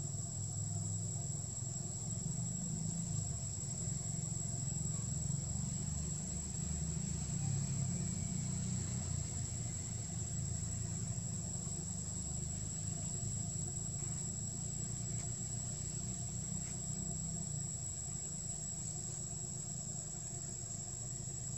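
Steady high-pitched drone of insects in the forest, with a low, uneven rumble underneath throughout, like a distant engine.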